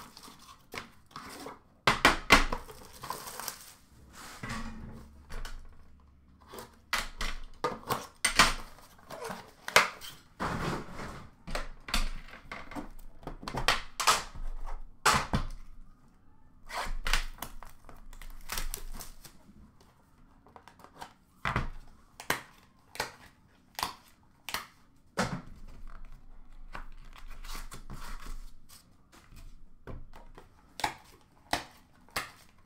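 The cardboard and wrapping of a box of hockey cards being cut with a knife and torn open, in a run of sharp tearing and crinkling noises with scattered knocks as the packaging and the inner box are handled.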